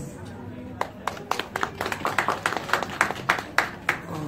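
Scattered applause from a small audience, a handful of people clapping, starting about a second in and dying away near the end.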